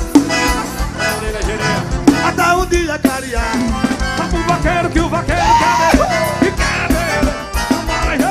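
Live forró band music with a steady beat and a melodic lead line.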